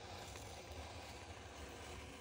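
Faint, steady scraping of a utility knife blade drawn slowly down a book's gutter, slicing pages out close to the spine.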